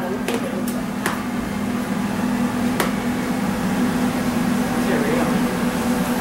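A steady low mechanical hum with a hiss of room noise throughout, with a few light clicks in the first three seconds and faint voices in the background near the end.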